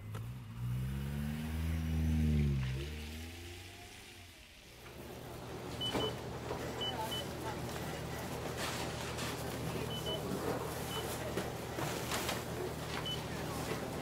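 A car engine whose pitch rises and then falls over the first few seconds, then fades. After a brief lull, a steady low hum sets in, with light scuffs and several short high beeps.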